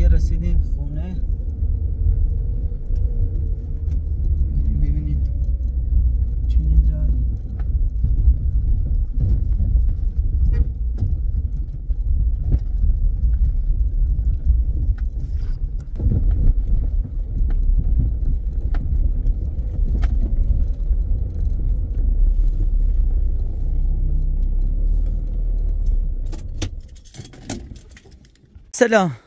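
Car cabin noise while driving: a steady low rumble from the engine and tyres, with frequent small rattles and clicks from inside the car. The rumble drops away near the end.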